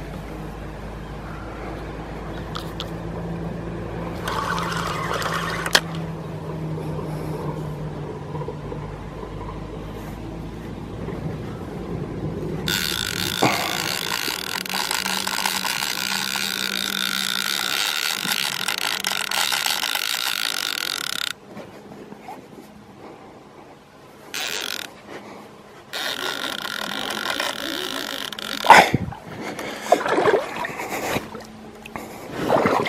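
Spinning reel's drag giving line in a long, high-pitched buzz of about eight seconds as a big sturgeon runs on a bent rod. It stops suddenly and starts again briefly later. A low steady hum comes before it, and there is a sharp knock near the end.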